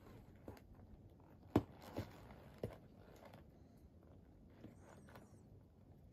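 Quiet outdoor background with a few faint, short clicks and knocks, the sharpest about a second and a half in, followed by two more within the next second.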